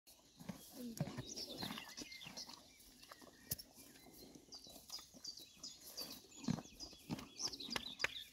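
Horses tearing up grass and chewing it, a steady run of short crunches and clicks. Small birds chirp in quick high series.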